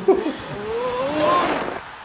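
Cartoon soundtrack: a pitched sound that rises and falls over about a second and a half, over stadium crowd noise, after a few sharp clicks at the start.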